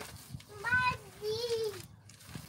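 A toddler's high-pitched voice: two wordless calls, the second longer, rising and then falling in pitch.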